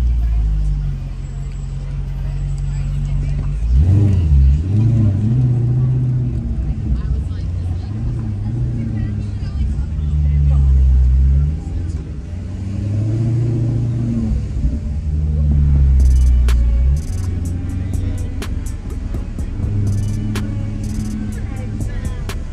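Maserati GranTurismo engine running at low town speed, its note rising and falling in a few swells, under music with a deep bass line. Sharp ticks join in over the last few seconds.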